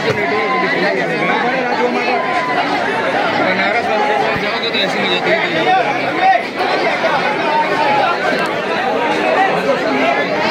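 Dense crowd chatter: many voices talking at once close around, a continuous babble with no single speaker standing out.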